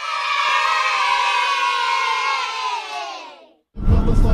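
A crowd cheering and shouting with many voices at once. The pitch drifts slightly down as it fades out at about three and a half seconds.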